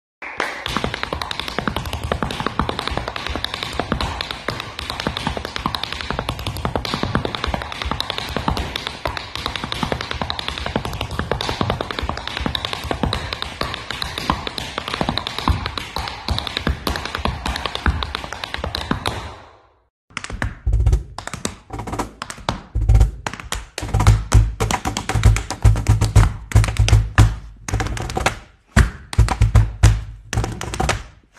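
Fast, unbroken tap dancing for about twenty seconds: tap shoes striking a wooden floor. After a short break, deep cajón bass strokes and slaps join sharper tap steps in a rhythmic duet.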